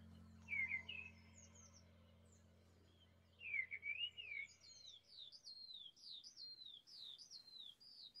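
The last low notes of a harp fade out over the first few seconds, while a songbird sings faintly: a short twitter about half a second in, a longer warbled phrase a little after three seconds, then a run of quick falling whistles.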